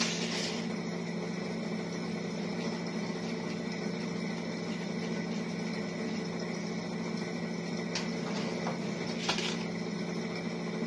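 Steady room hum with a few faint clicks from a homemade rubber-band rolling toy as its stick is wound, twisting the rubber band inside the plastic container.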